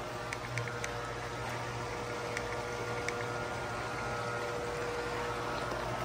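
Electric motors of motorized roll-down hurricane screens running as the screens lower, a steady hum with a held whine and a few faint ticks.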